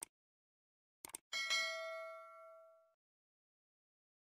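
Subscribe-button animation sound effects: short mouse clicks, then a single notification-bell ding about a second in that rings out and fades over about a second and a half.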